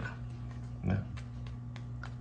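A steady low hum of room noise, with one short low grunt-like sound, like a murmured 'mm', about a second in.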